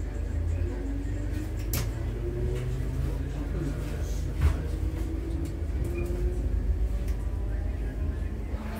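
Class 508 electric multiple unit heard from inside the carriage as it pulls away from a station and gathers speed: a steady wheel-on-rail rumble with a faint motor whine that steps up in pitch. A single sharp thump comes about four and a half seconds in.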